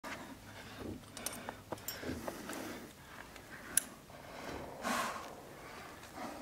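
A rock climber moving on a sandstone overhang: faint scattered clicks and scuffs, with a short breath about five seconds in.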